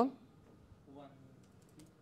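Faint clicking of computer keyboard keys, a few quick taps near the end, with a faint voice briefly about a second in.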